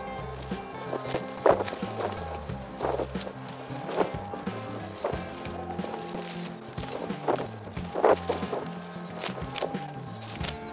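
Background music with a stepping bass line, with a few short knocks mixed in.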